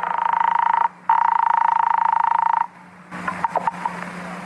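Telephone ringing, a buzzing ring heard twice, a short ring then a longer one, followed by a few clicks near the end as the line is picked up.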